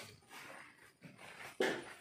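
A dog barking off-screen, with the loudest, sharp bark near the end.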